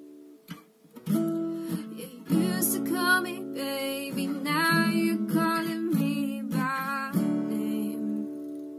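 Steel-string acoustic guitar with a capo, strummed and picked, with a young woman singing over it. The playing nearly drops out just before a second in, then the strumming resumes and the singing runs from about two seconds in to about seven seconds.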